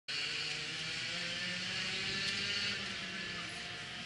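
Go-kart engine idling steadily, a low hum with a slightly wavering pitch and a hiss above it.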